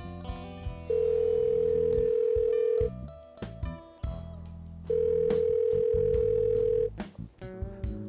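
Telephone ringback tone of an outgoing call: one steady tone sounding twice, about two seconds each with a two-second gap, while the call rings at the other end, over soft background music.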